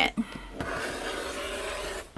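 Rotary cutter rolling along a quilting ruler, slicing through two layers of sewn cotton fabric on a cutting mat: a steady hiss that grows stronger about half a second in.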